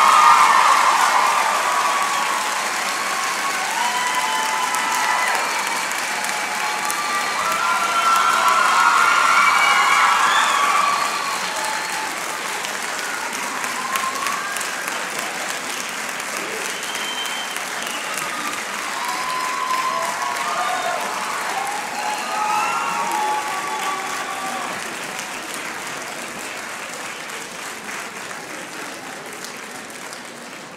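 Concert audience applauding and cheering at the end of a choir's song, with scattered whoops and shouts over the clapping; it bursts in at full strength and slowly tapers off near the end.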